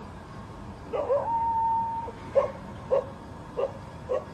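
A dog barking repeatedly in short barks, a little over half a second apart, over faint background hiss. About a second in, a steady held tone lasts about a second and is the loudest sound.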